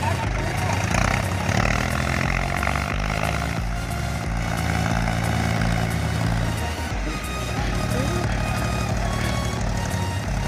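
Mahindra tractor's diesel engine running under load as it pulls through deep mud, mixed with background music that has a steady beat. The engine sound drops away about seven seconds in.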